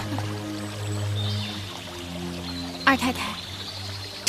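Background drama score of sustained, held notes, with a brief vocal sound about three seconds in.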